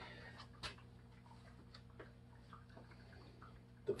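Faint steady electrical hum with a few soft scattered ticks and drips of water, from the running fog-chiller box, whose recirculating pump keeps water overflowing back into its reservoir.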